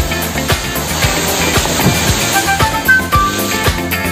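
Upbeat background music with a steady beat. About a second in, a rushing crash of leaves rises under the music for a second or so: a sago palm, felled with an axe, coming down through the surrounding foliage.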